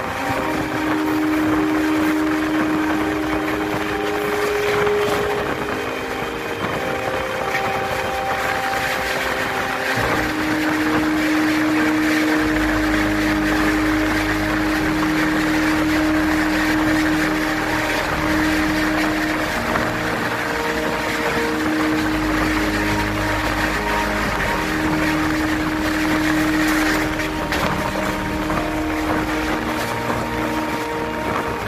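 Running noise of an express train heard from a passenger coach window at speed: wheels on rail and wind, with a steady hum. About ten seconds in, a goods train of open wagons passes close alongside on the next track and adds a heavy low rumble for several seconds.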